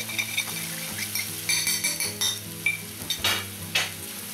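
Metal spoon scraping and tapping spices out of a ceramic bowl, with several ringing clinks, over chicken pieces sizzling in oil in an aluminium pan. Two sharp knocks come near the end.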